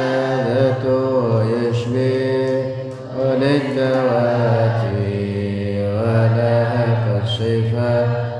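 A man chanting Arabic devotional verse solo, drawing the syllables out into long held notes that rise and fall slowly, with a brief pause for breath about three seconds in.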